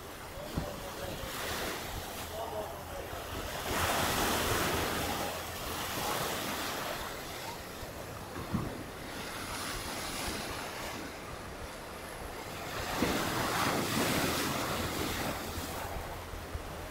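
Sea waves breaking and washing over shoreline rocks, swelling loudest about four seconds in and again about thirteen seconds in, over a steady low rumble of wind on the microphone.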